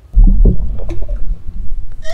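Playback of a hip-hop DJ scratch mix: a loud, bass-heavy beat that starts suddenly just after the beginning.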